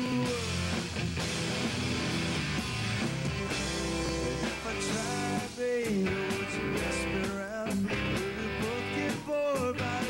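Rock band playing live: electric guitars, bass guitar and drums, with a male voice singing.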